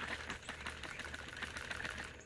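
Plastic trigger-spray bottle of detail spray being shaken by hand, the liquid sloshing in a quick, even rhythm.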